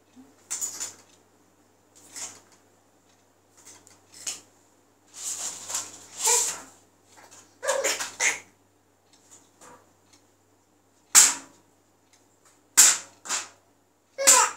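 A baby laughing in short, breathy bursts and squeals, irregularly spaced, with the three loudest, sharpest bursts close together in the last few seconds.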